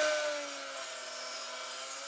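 Bench-top table saw running and cutting through a wide pine drawer box, splitting it into narrower drawers: a steady whine over a hiss of cutting, the pitch sagging slightly under the load of the cut and coming back up near the end.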